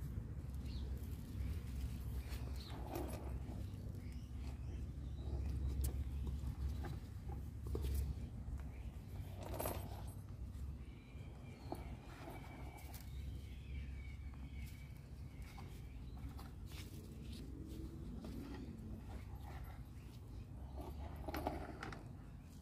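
Soft rustling and scattered light clicks of gloved hands working Burro's Tail cuttings into gritty perlite potting mix, over a steady low rumble.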